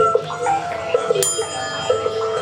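Live experimental music with a repeating pattern of tones. A little over a second in, a small metal cup is struck once and rings out with a bell-like tone.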